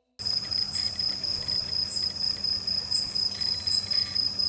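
Night insects, a steady high-pitched cricket trill, cutting in suddenly a moment in, with faint sharper chirps about once a second and a low hum underneath.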